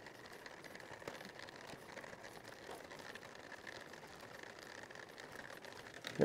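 Faint steady bubbling of a small aquarium air pump agitating the zinc plating solution, with a few light taps as a zinc anode strip is hung on the plastic bucket's rim.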